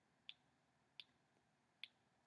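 Near silence broken by three faint, very short clicks, spaced unevenly, the last near the end.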